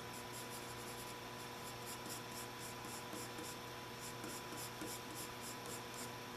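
Pencil scratching on drawing paper in quick, light sketching strokes, a few a second with a brief pause midway, as loose curved lines are roughed in.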